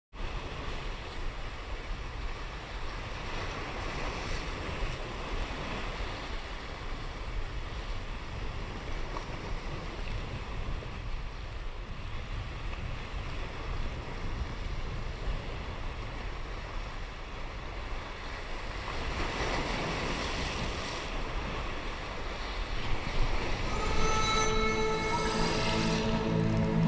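Waves washing over rocks at the shoreline, a steady rushing with wind on the microphone. Music fades in near the end.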